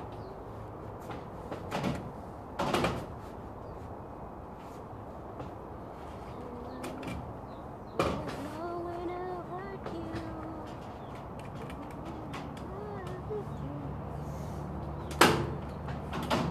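Irregular knocks and bangs: two about two seconds in, one about eight seconds in and the loudest near the end. Between them comes a wavering pitched sound, a voice or a whine.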